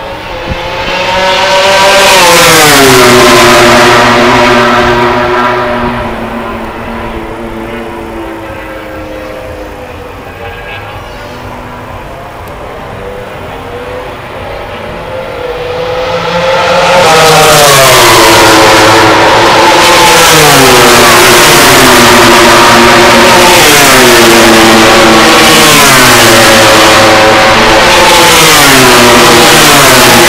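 Racing motorcycle engines at high revs. The pitch falls loudly at the start, the sound dies down in the middle, then comes back loud about halfway through, with the pitch dropping in steps and climbing again every couple of seconds as gears change.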